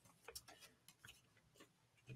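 Near silence, with a few faint, brief ticks of hands handling a paper leaflet.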